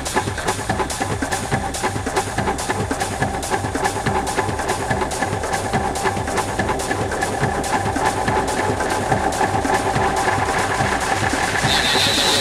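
Acid techno track playing: a steady run of clicking percussion under held synth tones, growing steadily louder, with the heavy kick-drum bass not yet in.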